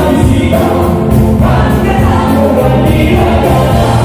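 Live band playing kuratsa dance music: several singers in unison over electric bass, electric guitar and a drum kit keeping a steady cymbal beat.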